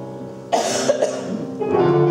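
Grand piano playing sustained notes, broken about half a second in by a single loud cough lasting about half a second.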